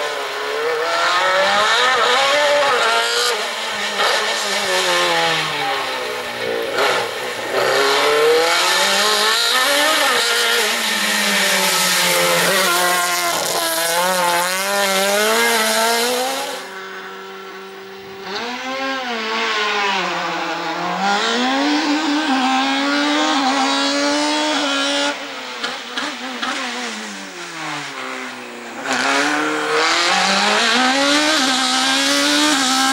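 Race car engine revving hard through a cone slalom, its pitch climbing and dropping again and again as the car accelerates and lifts between chicanes. There is a short lull around the middle, then the engine builds again.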